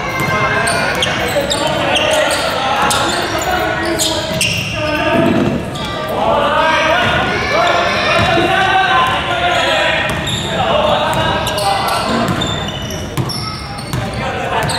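Basketball being dribbled on an indoor gym floor, the repeated bounces echoing in the large hall, over the shouts and chatter of players and spectators.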